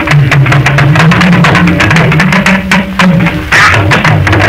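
Traditional Hausa hand drums played in a fast, dense rhythm, with a deep pitched line that slides up and down beneath the strokes, in an instrumental break without singing.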